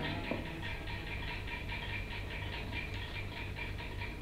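The soundtrack of an animated cartoon played back into a classroom: a soft, fast, even pulsing of about six beats a second, following the cartoon's opening guitar music.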